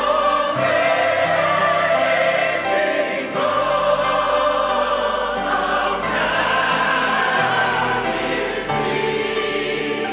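A large mixed choir of men and women singing a hymn in sustained chords, accompanied by a grand piano, with the harmony moving every second or so.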